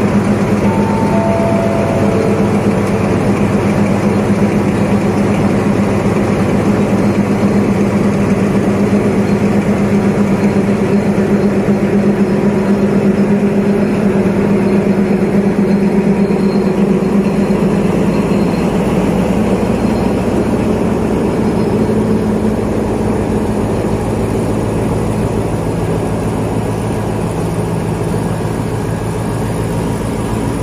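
Alsthom diesel-electric locomotive's engine running under load as the train pulls out of the station, its steady note fading about two-thirds of the way through as it draws away and the passing coaches roll by.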